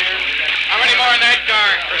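Old radio-drama sound effects of a rail yard at night: men's voices shouting over a steady hiss of rain, starting about half a second in.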